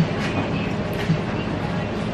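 Steady café room noise with indistinct background voices.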